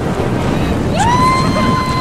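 A long, high scream from a person dropping on a canyon swing, starting about a second in and held for about a second before breaking off, over heavy wind rush on the microphone.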